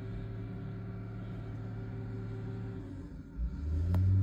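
Diesel engine of a John Deere wheel loader with a snowplow, running steadily in deep snow. About three seconds in it grows louder as it works to rock free.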